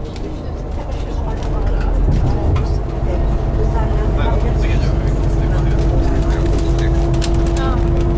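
Coach bus under way, heard from inside the passenger cabin: a deep engine and road rumble with a steady drone, growing louder over the first two seconds and then holding level.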